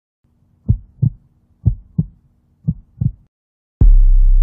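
Heartbeat sound effect: three double beats, about one a second, over a faint low hum. Near the end a loud, deep bass tone hits suddenly and holds.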